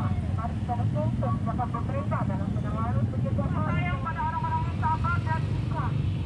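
Steady low rumble of motorcycle and car engines idling and moving in queued traffic, with people's voices talking over it.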